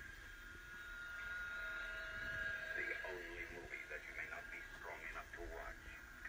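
Faint, thin-sounding voices from a television playing in a small room, too muffled to make out words. A steady high thin tone runs under them for the first few seconds.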